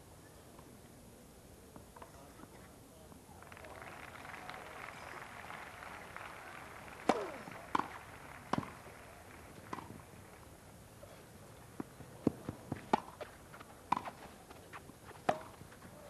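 Tennis rally on a grass court: rackets striking the ball in a string of sharp, short pops, at first about a second apart, then coming quicker near the end as the players volley at the net.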